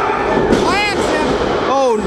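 A wrestler slammed onto the ring mat, the thud ringing through the hall, followed by a high-pitched shout from the crowd.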